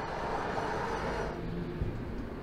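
Steady low street ambience: a distant traffic rumble with no distinct events, a faint hum entering late on.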